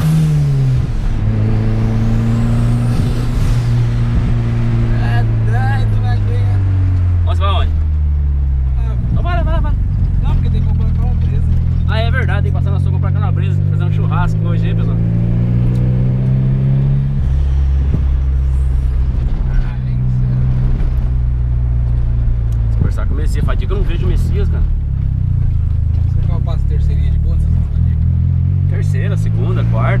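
Turbocharged Volkswagen Golf engine heard from inside the cabin while it is driven hard, its note sliding up and down with the throttle and stepping down suddenly once about halfway through, as at a gear change. Voices talk over it at times.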